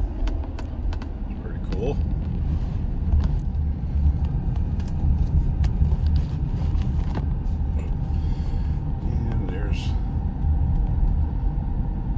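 Car cabin noise while driving: a steady low rumble from the engine and tyres on the road, with a few light clicks.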